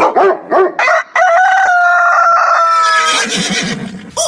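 Recorded rooster crowing, cock-a-doodle-doo: a few short notes, then one long held note that falls slightly in pitch and ends about three seconds in.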